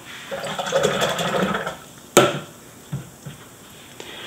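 A watercolour brush swished in a jar of rinse water for about a second and a half, then a single sharp tap and two lighter knocks.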